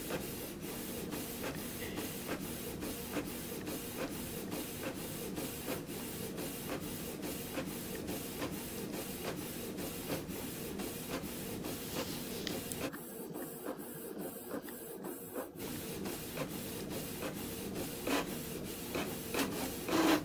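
Home inkjet printer printing a page: a steady mechanical run with regular clicks, about three a second.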